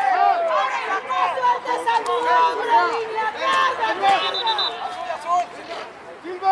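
Several overlapping voices of sideline spectators and players talking and calling out at once.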